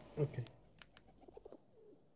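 Faint low bird calls repeating in the background, with a few soft clicks.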